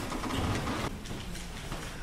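Rustling and shuffling noise with a few light knocks: people moving and settling, and papers being handled at a pulpit microphone.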